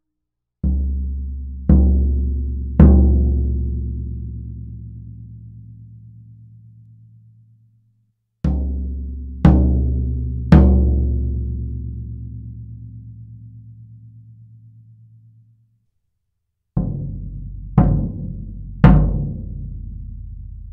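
Floor tom with a one-ply coated Remo Ambassador batter head struck with a felt mallet: three sets of three single strokes, each stroke louder than the last, every one ringing on with a long, low sustain. The first two sets are played with the head tuned high and the last set with it tuned low.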